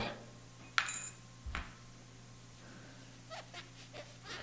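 A sharp clink of glass about a second in, with a brief high ring, then a softer knock and a few faint ticks: a glass microscope slide and cover glass being handled.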